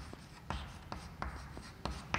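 Chalk writing on a blackboard: a string of short, fairly faint taps and scrapes as the chalk strikes and strokes the board.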